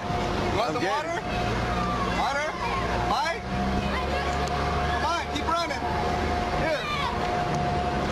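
People's voices over a motor vehicle engine running, with a thin steady high tone throughout.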